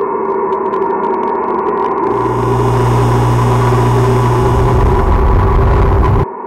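Production-logo sound sting: a sustained, gong-like ringing tone. About two seconds in, a deep hum and hiss join it and build, then the whole sound cuts off suddenly at the end.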